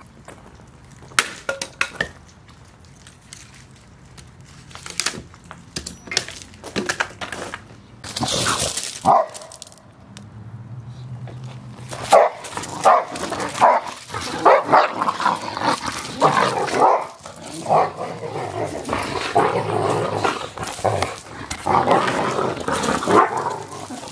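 Dogs barking, louder and more continuous through the second half. Scattered sharp knocks and clicks sound in the first half.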